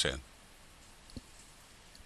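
A single computer mouse click a little over a second in, against quiet room tone.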